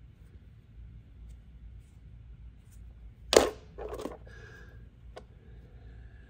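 Quiet handling of a rock in the hand, broken a little past halfway by one sharp click, followed by a brief softer sound and, later, a faint tap.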